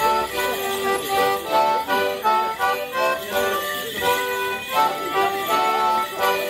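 A lively traditional Morris dance tune played on a squeezebox such as a melodeon, in a steady dance rhythm, with the jingle of the dancers' leg bells.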